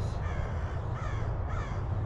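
A crow cawing, three faint caws about half a second apart, over a steady low rumble.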